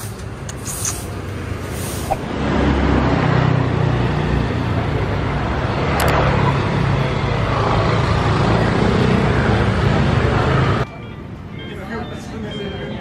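Street traffic: motor scooters riding past close by, a loud steady engine and road rumble that cuts off suddenly near the end.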